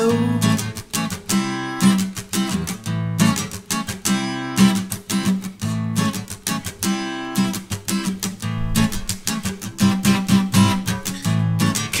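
Acoustic guitar strummed alone in a steady rhythm, the chords changing about every second.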